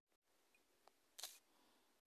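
Near silence, with one short, faint click a little over a second in, most likely a tap on the phone's screen or keyboard.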